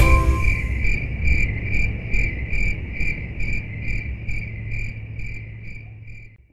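Cricket chirping, a high pulsed trill about two to three chirps a second, over a low rumble, fading out near the end.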